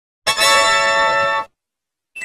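An effects-processed Windows system sound: one bright electronic chord of many steady tones starts about a quarter second in, holds for just over a second and cuts off suddenly.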